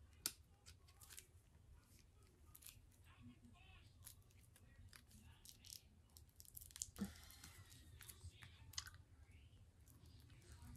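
Faint, scattered clicks and crackles of fingers picking at the packaging of a new deck of cards, struggling to get it open.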